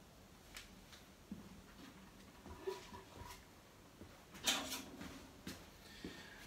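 Quiet room with a few faint clicks and a short rustling noise about four and a half seconds in. No steady machine sound is heard, so the planer is not running.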